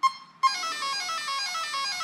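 Electronic speed control (Castle XLX2) beeping through the RC car's motor during throttle recalibration: a short beep at the start, then from about half a second in a run of tones stepping steadily down in pitch, the ESC acknowledging the neutral point.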